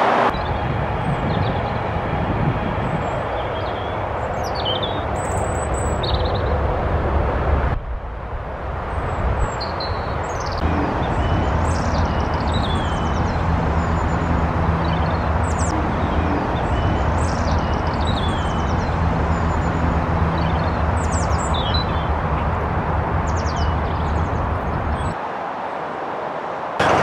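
Steady rumble of motorway traffic with small birds chirping repeatedly over it. From about eleven seconds in, a low steady engine hum runs underneath.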